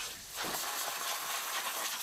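Compressed-air blowgun hissing steadily as it blows sawdust off sawmill machinery.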